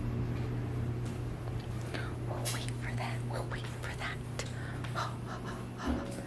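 Steady low hum of a clothes dryer running through its cycle, with scattered light rustles and clicks.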